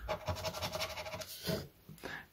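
A small scraper rubbing the scratch-off coating from a National Lottery scratchcard in quick, rapid strokes, stopping about a second and a half in.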